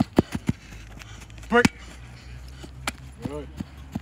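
A few quick, sharp taps of an athlete's feet on artificial turf as he backpedals and plants to break, under shouted drill commands.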